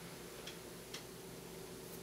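Quiet room tone: a steady faint low hum with two faint ticks about half a second apart.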